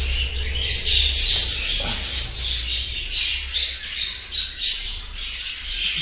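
A flock of budgerigars chattering and chirping continuously, with many short calls overlapping, over a steady low hum.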